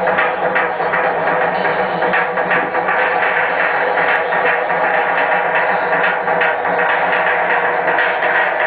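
Live electronic rock band playing loud and dense, with no break.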